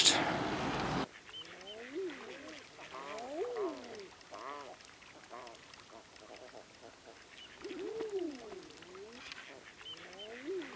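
A flock of ducks on the water calling: many overlapping calls, each rising and then falling in pitch, in scattered clusters, loudest about three and a half and eight seconds in.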